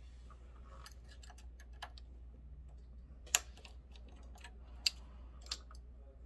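Scattered small, sharp metal clicks and ticks of needles being changed on a multi-needle embroidery machine: a small Allen wrench turning the needle clamp screws, and loose needles clicking together in a cupped hand. The loudest clicks come about halfway through and twice near the end.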